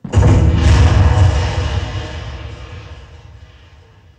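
Sound effect of a heavy steel cell door slamming shut: a sudden loud boom that rings on and fades away over about four seconds.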